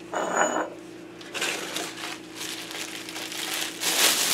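Thin plastic bag of pork lard rustling and crinkling as it is handled and squeezed out over flour, in irregular bursts that grow busier toward the end. A faint steady low hum runs underneath.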